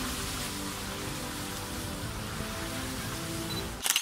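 Background music with held notes under a steady rushing, rain-like hiss, both cutting off suddenly near the end.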